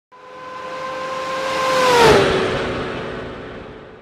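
A racing engine passing by at speed: a steady engine note grows louder, peaks about two seconds in, then drops in pitch and fades as it goes away.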